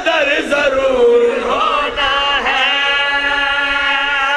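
Several men's voices chanting a devotional verse together, drawing out long held notes with a few slides in pitch.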